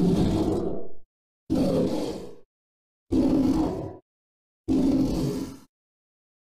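A monster roar sound effect played four times in a row, each roar about a second long with a short silent gap between, starting and stopping abruptly.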